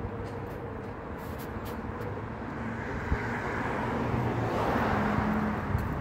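A car driving past on the street. Its tyre and engine noise swells from about halfway through, peaks shortly before the end, then starts to fade.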